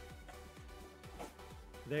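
Quiet background music: held tones over a soft, low repeating beat.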